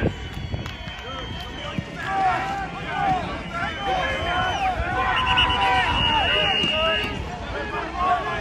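Many voices of spectators and players talking and calling out over one another, with a long, steady, high whistle blast about five seconds in.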